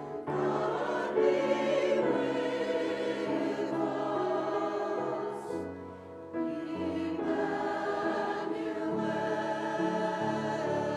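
Mixed church choir singing a slow hymn in parts. One phrase ends about six seconds in and the next begins.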